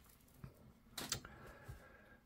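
Quiet room tone with a few faint short clicks about a second in: light handling noise.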